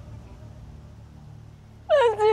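A faint low steady background for most of the moment, then near the end a woman breaks into a loud wavering crying wail.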